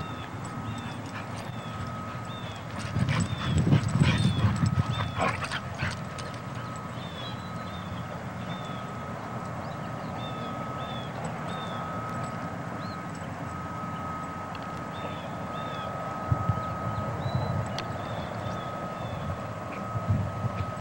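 Two dogs playing rough together, with bouts of scuffling and growling about three seconds in and again near the end. A steady thin high tone and short repeated chirps run underneath.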